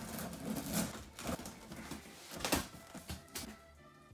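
Scissors slicing through packing tape on a large cardboard box, then the cardboard flaps being pulled open, with several sharp cracks and rustles of cardboard.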